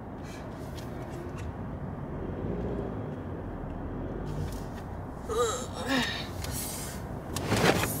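Car engine and cabin rumble, low and steady, heard inside the car as it is slowly parallel parked. Brief vocal sounds come about five and a half seconds in, and a short loud rush of noise comes near the end.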